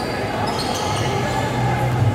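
Arena crowd murmur during a basketball game, with a basketball bouncing on the hardwood court.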